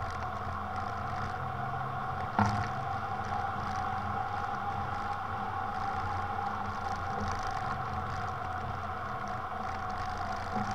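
Steady rush of airflow over an Icaro RX2 hang glider in flight, heard as wind on a microphone mounted on the wing, with a single short knock about two and a half seconds in.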